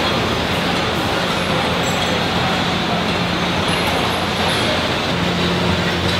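Steady machinery noise of a car assembly line, with a low steady hum underneath.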